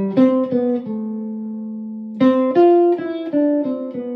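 Telecaster-style electric guitar played clean, picking a single-note melodic line: two short notes, one note held for about a second, then a quicker run of notes. The line moves through the C major scale, resolving to C.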